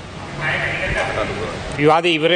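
Distant, off-microphone voices, then a man starts speaking close to a microphone near the end.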